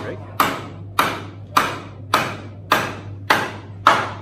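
A hammer striking in a steady rhythm, seven blows a little under two a second, each with a short ringing decay, over a low steady hum.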